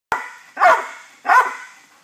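A chocolate Labrador barking twice, two loud single barks less than a second apart, after a short sharp click at the very start.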